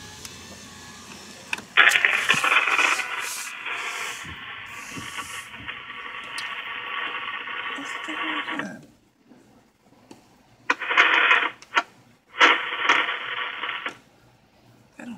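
Tinny, narrow-band sound from a McDonald's drive-thru order speaker. It plays for about seven seconds, then comes in two short bursts near the end.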